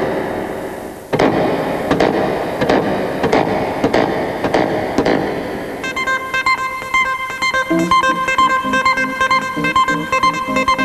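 Live band music led by a Hohner Clavinet electric keyboard. Dense playing with regular accented hits gives way, about six seconds in, to clear sustained keyboard notes, and a bass line enters soon after as a new tune starts.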